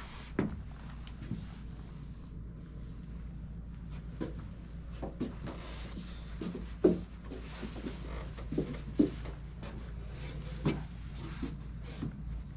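Low steady hum of a quiet indoor room, with scattered soft knocks and clicks a second or two apart, the sharpest about seven and nine seconds in.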